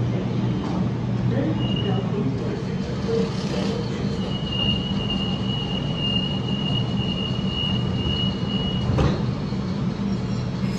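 Electric passenger train running with a steady low rumble and hum, with a thin high squeal held at one pitch from about four to nine seconds in. A single sharp knock comes near the end.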